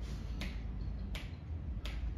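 Finger snaps beating a steady tempo, three sharp snaps about 0.7 seconds apart, setting the beat for a count-in to piano playing.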